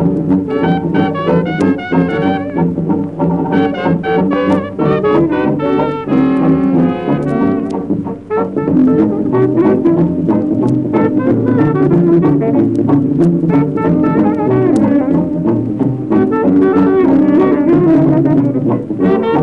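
Traditional jazz band playing an instrumental passage, brass horns leading over a steady beat.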